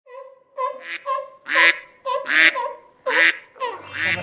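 A rapid series of honks, about eight in four seconds, each one short and steady in pitch, several of them loud and harsh.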